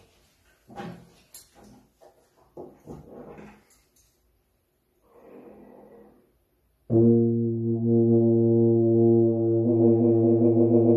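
Knocks and rustles of a tuba being handled and lifted into playing position, then a soft breath. About seven seconds in, the tuba starts a loud, long sustained note, moving to a new note near the end.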